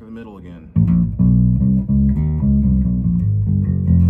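Gretsch G2220 Junior Jet II electric bass played fingerstyle through a bass amp: a quick run of plucked notes starting about a second in, ending on a held low note that rings out.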